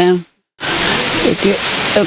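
A loud, steady hiss like static that starts abruptly about half a second in, with a voice faintly audible beneath it.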